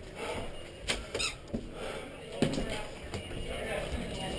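Faint, indistinct voices with a few short knocks and clicks from people moving through a house.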